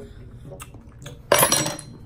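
Metal spoon clinking as the last few spicy noodles are spooned up and eaten, with small scattered ticks, then a short loud hissing burst about a second and a half in.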